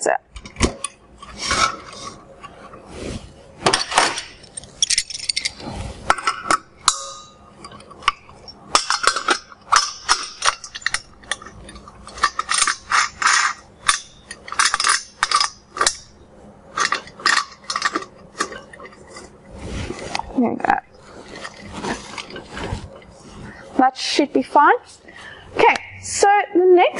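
Irregular clinks, taps and knocks of metal and glass being handled as a Soxhlet extraction column is set onto its stainless steel boiler and clamped at the joint.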